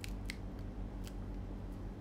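Three short, sharp clicks close to the microphone in the first second, over a steady low hum.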